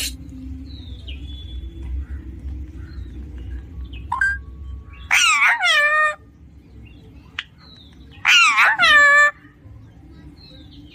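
Alexandrine parakeet giving two loud, drawn-out calls, each about a second long and falling in pitch at the end, a few seconds apart, with a few faint short chirps before them.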